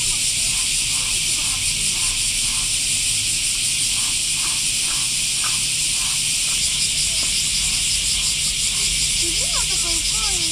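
Loud, steady chorus of cicadas, a high-pitched pulsing drone throughout. People's voices come in briefly near the end.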